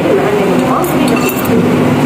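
A spoon and fork clink lightly against a ceramic bowl a few times, about a second in, as salad is eaten. Voices talk steadily in the background.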